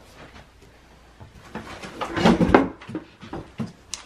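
Plastic and metal clunks and clicks of a three-wheel stroller's seat being set onto the frame and latched into place, a cluster of knocks about halfway through and a single click near the end.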